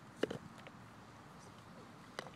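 A young child says one short word, then only faint outdoor background hiss.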